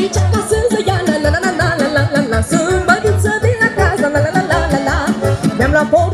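Fast Romanian folk dance music for a hora: a quick, steady bass beat under an ornamented melody that wavers rapidly in pitch.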